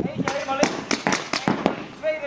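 Paintball markers firing during a game: a rapid, irregular run of sharp pops, several a second, with voices faintly behind.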